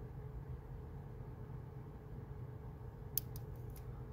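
Lock pick working the pins of an Abus EC75 dimple padlock: a quiet low hum, then a quick run of four or five faint, sharp metallic clicks near the end as a pin sets.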